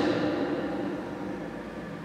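A pause in a man's lecture in a large hall: the tail of his voice echoes and dies away slowly, leaving a steady low background hum of room tone.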